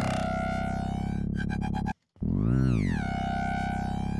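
Gritty FM synth bass from a Kilohearts Phase Plant patch (a sine wave frequency-modulating a triangle wave) played as two sustained notes, split by a short gap about two seconds in. Each note opens with an upper tone sweeping downward over a steady low pitch. The oscillator sync is switched off.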